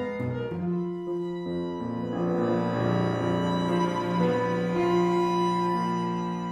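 Piano trio playing: violin and cello hold long bowed notes over the piano, the music swelling louder about two seconds in.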